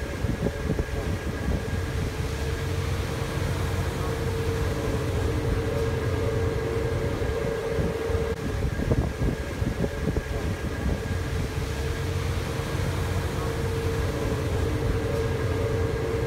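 Steady engine drone of a boat under way: a constant low rumble with a steady hum over it, unchanging throughout.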